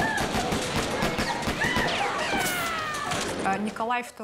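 Firing-squad volley: a rapid, dense burst of many gunshots with high screams over it, dying away near the end.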